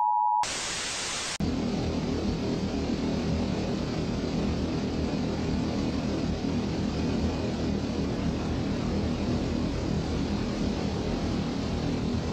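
A short electronic test-tone beep and a burst of TV static. Then, from about a second and a half in, the Hypnotoad sound effect: a steady droning hum.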